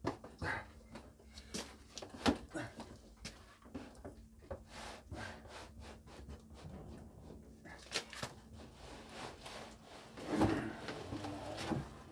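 Fibreglass tank being worked free of its fibreglass mould by hand: a string of sharp cracks, creaks and knocks as the part releases from the mould surface, with heavier handling noise near the end.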